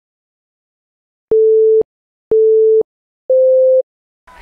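Three steady electronic beeps, each about half a second long and a second apart, the third a little higher in pitch than the first two.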